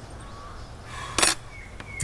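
A crow cawing once, a single short call about a second in, with faint high chirps of small birds around it.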